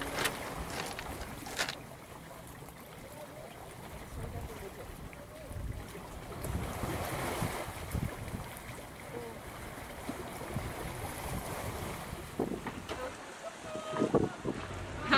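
Wind buffeting a camera's microphone outdoors: an uneven rushing with low rumbling gusts and a couple of sharp clicks in the first two seconds.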